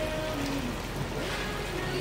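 Hot oil and onions sizzling in a cooking pot as pieces of turkey and goat head are tipped in from a glass bowl along with their stock.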